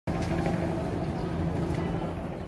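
A vehicle's engine running steadily amid street noise, a low even hum.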